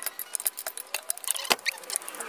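Screwdriver turning a screw through a brass mounting bracket into a jarrah hardwood base: a run of small clicks and faint squeaks, with one sharper knock about one and a half seconds in.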